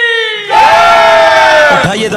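A held pitched note fades out, then about half a second in a loud crowd-shout sample, a mass of voices all sliding down in pitch, fills the next second and a half and stops just before the end, as a drop in a DJ competition remix.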